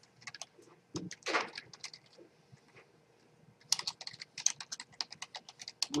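Computer keyboard typing a username and password. A few keystrokes come in the first second, then a fast run of keystrokes near the end.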